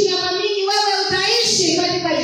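A woman singing into a handheld microphone, holding long notes with slides between them.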